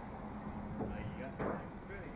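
Indistinct voices of people nearby over a low rumble of wind on the microphone, with a single sharp thump about one and a half seconds in.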